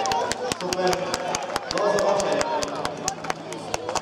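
A few people clapping unevenly, sharp separate claps several times a second, while people talk in the background.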